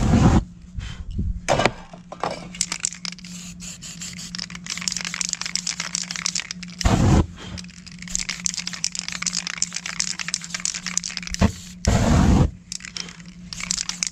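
A short, loud whoosh as the spray-painted surface is set alight, then a dense crackling, scraping noise. Two more short rushes of sound come about seven seconds in and near the end.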